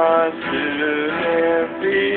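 Acoustic guitar being played while a voice sings a slow melody of held notes that step from pitch to pitch.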